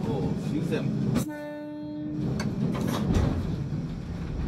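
Miike Railway coal-mine electric train running, heard from inside the conductor's compartment: a steady rumble mixed with knocks, rattles and outside sounds. About a second in, a single steady tone sounds for about a second.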